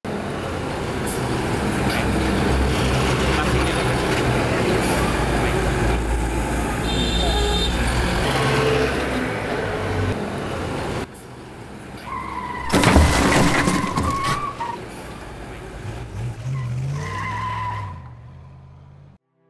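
Loud vehicle engine and road noise that cuts off abruptly about eleven seconds in, then a tyre screech and a sharp crash as a vehicle strikes a man in the road, the loudest moment, about two seconds later.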